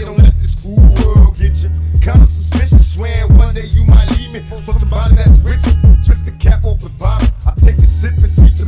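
Hip hop track: a man raps over a heavily boosted bass line and a steady drum beat.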